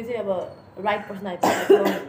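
A woman's voice with short bursts of laughter, then a cough about one and a half seconds in.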